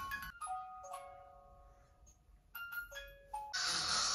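Soft lullaby-like melody of slow, single bell-like chiming notes, each ringing on after it is struck. Near the end a louder steady hiss comes in.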